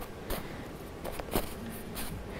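Faint clicks of a battery being fitted into a small handheld flashlight and its cap worked back on, a couple of brief taps over low room noise.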